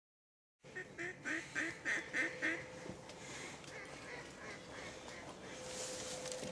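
Ducks quacking: after about half a second of silence, a run of about seven loud quacks roughly a third of a second apart, then fainter quacking carrying on behind.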